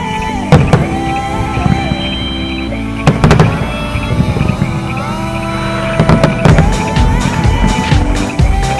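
Aerial fireworks shells bursting in the sky: sharp bangs about half a second in and around three seconds in, then a quick run of bangs and crackles near the six-to-seven-second mark. A steady instrumental melody plays throughout.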